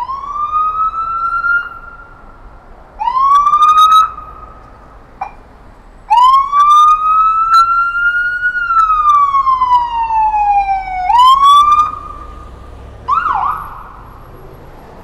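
Emergency-vehicle siren sounding loudly in separate bursts: short rising whoops, one long blast that climbs and then slowly falls, another quick rise, and a brief warbling yelp near the end.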